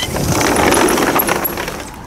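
Sliding glass patio door rolled open along its track: a rolling rumble that swells and then fades over about two seconds.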